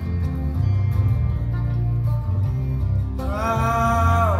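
Live country-folk band playing an instrumental passage on acoustic guitar, electric guitars and electric bass, with a strong steady bass line. A long held note that slides up comes in near the end.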